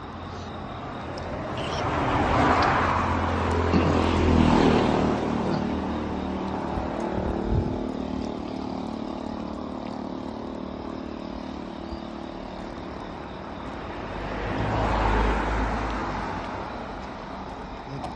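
Road traffic: two vehicles pass along the street, the first about two to five seconds in and the second around fifteen seconds, each swelling and fading. A steady traffic hum continues between them.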